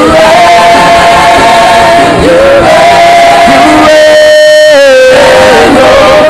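Gospel worship music with singing in long held notes that step from one pitch to the next.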